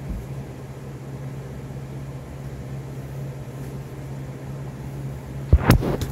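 Electric fan running: a steady low hum with a light rushing hiss. Two or three sharp knocks near the end.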